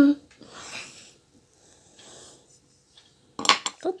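A small toy dinosaur figure toppling over and knocking against a hard white basin: a quick cluster of several clicks and knocks near the end.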